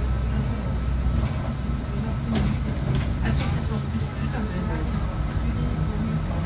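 City bus driving, heard from inside at the front: a steady low engine and road rumble with a faint steady high tone, and a few sharp rattles or clicks around the middle.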